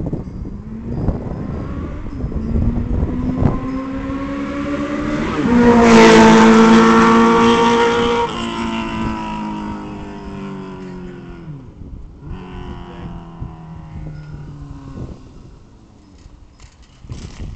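Motor vehicle engine passing. Its pitch steps up about five seconds in, it is loudest for the next two or three seconds, then it drops in pitch and fades away.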